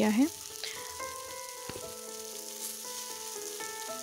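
Potato and raw green banana pieces frying in oil in a wok on low heat: a steady, fairly quiet sizzle. One light knock just under two seconds in.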